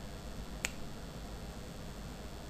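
A single sharp click about two-thirds of a second in, over a faint steady low hum.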